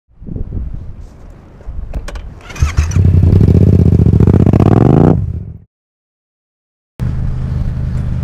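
Yamaha MT-07 parallel-twin motorcycle engine, fitted with an Akrapovic exhaust, starting about two and a half seconds in. It runs loudly, revs up with a rising pitch, and cuts off suddenly just after five seconds. After about a second of silence, the engine is heard again near the end as a steady drone while riding.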